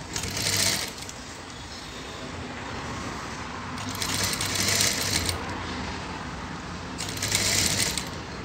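Sewing machine stitching a fabric piping strip, run in three short bursts with quieter gaps between them.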